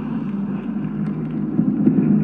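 Steady low hum and rumble of a running vehicle engine, unchanging throughout.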